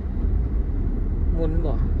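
Steady low rumble of a car's engine and tyres, heard from inside the cabin while driving.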